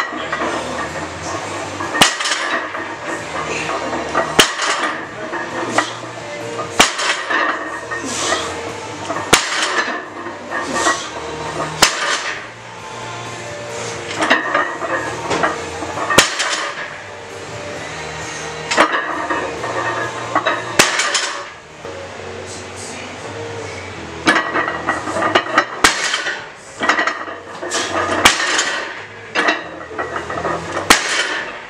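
A barbell loaded with weight plates knocking down on the floor at the bottom of each deadlift rep, a sharp clank about every two and a half seconds, over background music.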